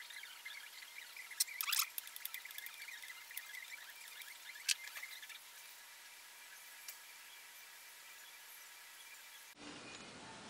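Faint scattered metallic clicks and taps as a headstock hold-down bolt is worked loose inside a lathe bed, with a small cluster of clicks about a second and a half in. After about five and a half seconds only a steady hiss with a faint steady tone remains.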